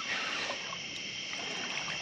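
Steady riverside ambience: water trickling with a constant high insect drone, no distinct splashes or knocks.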